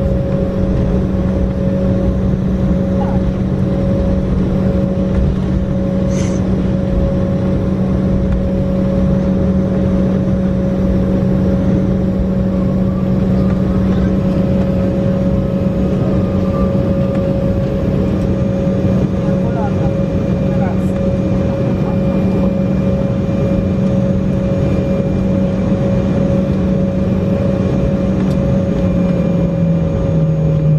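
Cabin noise of an Embraer ERJ-195 taxiing on its idling GE CF34-10E turbofan engines: a steady drone with a low hum and a higher whine. The low hum falls in pitch near the end.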